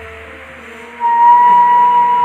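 A side-blown bamboo flute comes in about a second in with a loud, long held note over a soft steady harmonium drone.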